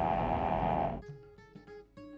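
A rain alarm's speaker sounding over a steady hiss of rain, with a steady tone held through it, cutting off suddenly about a second in. Soft plucked-string background music follows.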